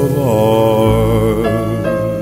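Closing bars of a slow country ballad: a male singer holds the final sung note with vibrato over a steady band backing, and short struck accompaniment notes come in near the end.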